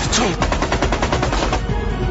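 A burst of rapid automatic gunfire, about ten shots a second, that stops about one and a half seconds in.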